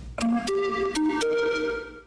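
Short musical jingle closing a televised political campaign ad: four held notes with sharp attacks, stepping up and down in pitch, fading out near the end.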